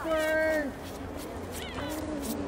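Spectators' drawn-out shouted calls urging a skijoring dog on: one long held call that drops off after about half a second, then a rising whoop near the end.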